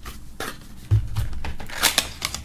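Fingers working a USB stick out of a tight slot in a cardboard box insert: short scrapes and clicks of card and plastic, with a dull knock about a second in and a scraping rustle near the end.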